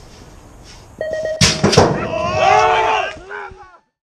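BMX starting gate firing: a short run of electronic cadence beeps running into a held tone, with the gate slamming down in one loud clang a little over a second in. Shouting and whooping voices follow, then the sound cuts off shortly before the end.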